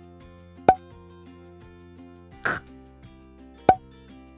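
Soft background music, with a plop sound effect about a second in and again near the end. About two and a half seconds in, a woman says the voiceless phonics sound /t/ for the letter T, a short breathy puff with no voice in it.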